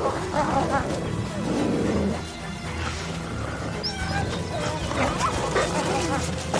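Gray wolves growling and whining as they tussle, with high, wavering whines about half a second in and again around four to five seconds in, over steady background music.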